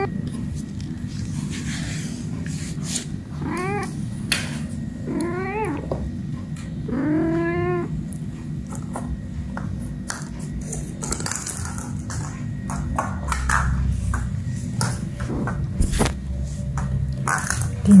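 A domestic cat meowing three times close to the microphone, each call rising then falling in pitch, the third one longer. A few light knocks and scuffles sound between the calls.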